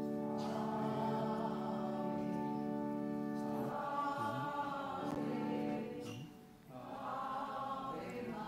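Choir singing a sacred hymn in long held notes. The singing dips briefly between phrases about six seconds in, then resumes.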